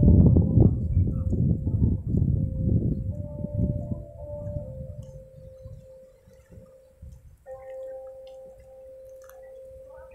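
Rumbling wind buffeting the microphone for the first few seconds, dying away by about the fifth second. Under it, steady, chime-like held tones sound throughout, with a second, higher tone joining about seven and a half seconds in.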